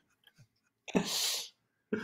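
A single sharp burst of breath from a person, a hissing puff about half a second long, about a second in.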